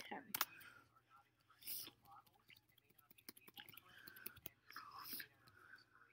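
Faint whispered muttering from a man at a computer, with a few sharp computer-keyboard clicks near the start as a typed search is submitted, and more scattered light clicks later on.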